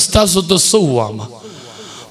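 A man preaching through a microphone: a drawn-out phrase that falls in pitch and trails off about a second in, followed by a short pause.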